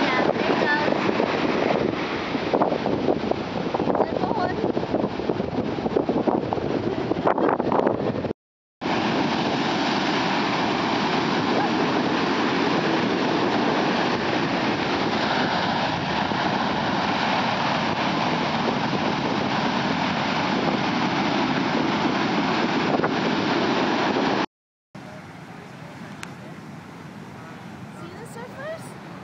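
Heavy surf breaking and washing up the beach, a steady rush of whitewater mixed with wind buffeting the microphone. The sound cuts out briefly twice, and after the second break it continues much quieter.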